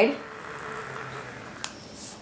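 Derwent electric eraser running, its spinning tip rubbing coloured pencil off cardstock: a faint steady whir, with a short click near the end.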